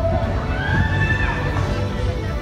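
A high voice holding one long note that rises, holds steady for about a second and then falls away, over distant amplified music and crowd noise.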